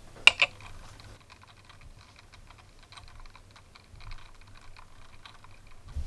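Handling noise as a small glass USB bulb and a phone are picked up and moved: two sharp clicks shortly after the start, then a string of faint, irregular light ticks and taps.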